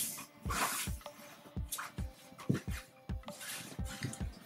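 Cloth rustling as a shirt is handled and turned right side out on a table, over background music with a steady beat of about two thumps a second.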